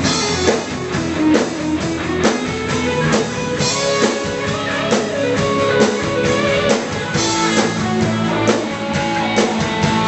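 Live rock band playing: electric guitars, bass and a drum kit keeping a steady beat.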